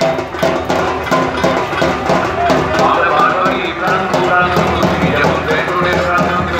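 Loud parade music with drums and clattering percussion, voices mixed in.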